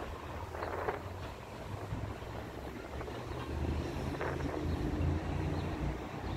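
Street traffic heard from above: a steady low rumble of vehicle engines, with two brief hissing swells, one just under a second in and one about four seconds in.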